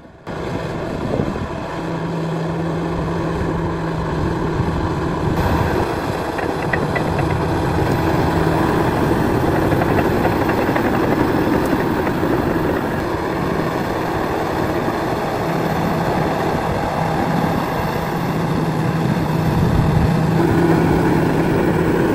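Large crawler bulldozer's diesel engine running steadily, a continuous low engine hum at an even pitch.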